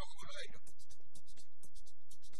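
Speech: a voice talking, with no words clear enough to make out.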